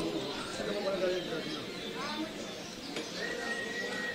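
Indistinct voices in a busy room, not close to the microphone, with a short rising chirp about two seconds in and a thin steady high tone starting about three seconds in.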